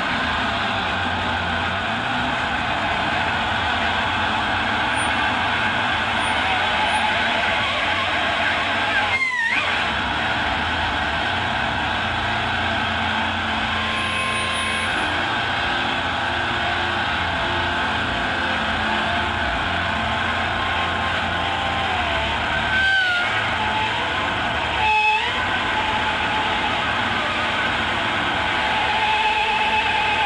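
Electric guitar played live through an amplifier as a dense, steady wall of distorted noise. It is broken three times by brief dips where a sliding whine of feedback cuts through: once about nine seconds in and twice near the end.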